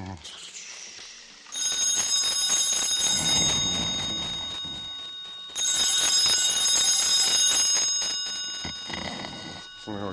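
Telephone bell ringing twice. Each ring lasts about four seconds, starting loud and slowly fading.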